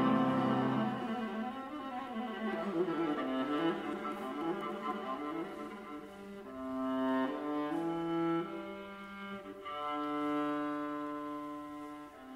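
A viola played with the bow in a slow, quiet classical passage. A loud note fades in the first second, a quick run of notes follows, and from about halfway through come long held notes.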